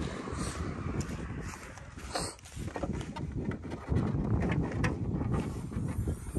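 Wind buffeting the microphone outdoors, louder in the second half, with a few light clicks and knocks from handling the car as its bonnet is opened.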